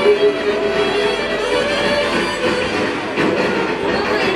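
Live band music from a singer with a small band of saxophone, keyboard, drums and guitar, playing long held notes.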